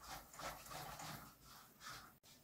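Near silence: room tone with a few faint, soft sounds.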